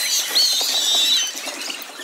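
Athletic shoes squeaking on a hardwood gym floor: a few high squeaks, one of them long and wavering in the first second.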